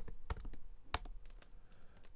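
Computer keyboard typing: a quick run of key clicks while a command is typed, with one louder keystroke about a second in, after which the clicks thin out.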